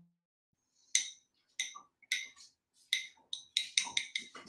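Irregular light clicks and taps, about ten of them, beginning about a second in and coming closer together near the end: small hard painting supplies being handled and set down on a table.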